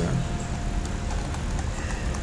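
Computer mouse clicking as columns are placed in the drawing, over a steady hiss and low hum from the recording.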